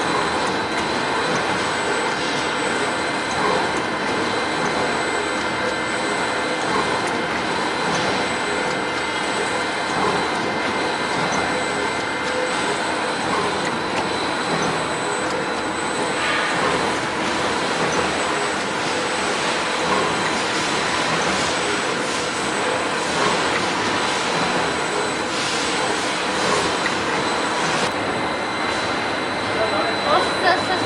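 Dough sheeting line of an automatic croissant production line running: a steady mechanical noise from the rollers and conveyor, with a thin, steady high whine.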